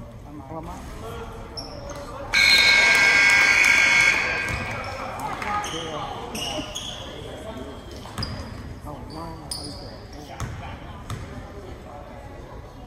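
Gym scoreboard horn sounding loudly for about two seconds, cutting off sharply and ringing on in the hall. Crowd chatter and a few sharp knocks of a basketball bouncing on the hardwood floor follow.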